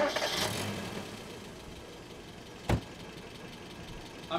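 A sudden loud hit that fades over about a second into a low, steady rumbling haze, with a single sharp knock nearly three seconds in.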